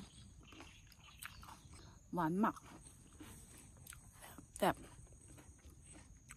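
Faint wet mouth sounds of a person chewing a ripe cherry tomato, with a single sharp smack about three-quarters of the way through.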